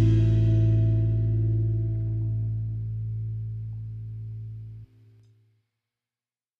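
The band's final chord, electric guitar and bass, ringing out and slowly fading. It cuts off suddenly about five seconds in, leaving silence.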